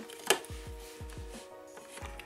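One sharp click of hard plastic about a third of a second in, as the Dino Megazord toy's Triceratops piece is pushed into the Tyrannosaurus, over soft background music with a steady beat.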